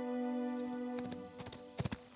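A held music chord fading out, then horse hoofbeats coming in about a second in and growing louder near the end.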